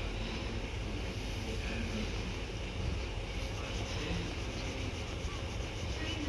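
Low steady rumble of a distant Class 153 diesel railcar's engine, with wind noise on the microphone over it.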